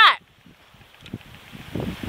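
Faint wind noise on the microphone, with a few soft knocks from about a second in.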